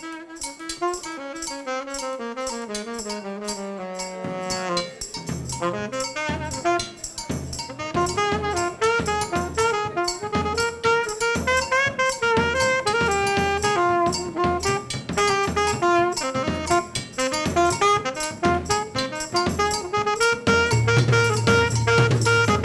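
Live jazz-funk band: two saxophones playing a melody line over drums. For the first four seconds or so the horns play over light, regular cymbal ticks, then the rhythm section comes in fully with drum kit and a low bass line, and the music grows louder toward the end.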